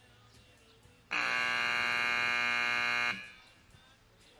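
Arena timer buzzer sounding one loud, steady blast for about two seconds, starting about a second in and cutting off sharply, signalling the end of the timed sorting run.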